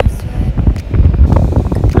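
Strong wind buffeting a phone's microphone: a loud, gusty low rumble that rises and falls irregularly.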